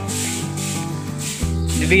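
Background music, with the scratchy hiss of a stick broom's bristles brushing across the pen floor.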